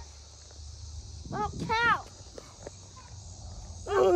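Steady high chirring of crickets in the background. A high voice gives a short two-part call about a second and a half in, and a louder voice starts right at the end.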